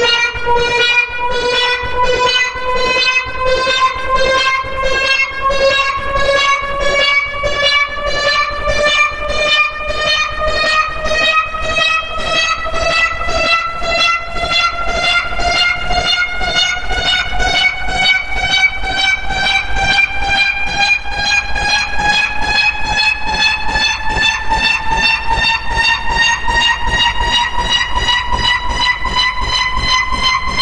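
A MIDI file rendered on a sampled piano soundfont (Piano Magenda): one cluster of piano notes struck over and over in a rapid, hammering stream. The repeats speed up to about twice as fast, and the whole sound rises slowly in pitch by about an octave, so the pile-up of notes blurs into a buzzing, horn-like chord.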